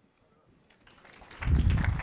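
Audience applause, rising out of a brief quiet about a second in and loud by the end.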